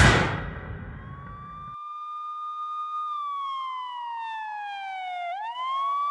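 A sudden loud bang that rings out and cuts off under two seconds in, followed by a siren: a steady wail that slowly falls in pitch and then sweeps quickly back up near the end.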